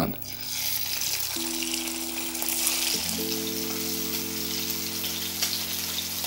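Cod fillet sizzling as it fries in hot oil in a frying pan, a steady crackling hiss that starts just as the fish goes in. Soft sustained background music chords run underneath.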